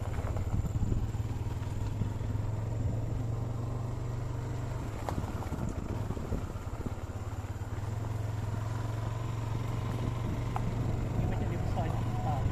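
Motorcycle engine running steadily while riding along a rough dirt road, with a constant low hum mixed with wind and road rumble.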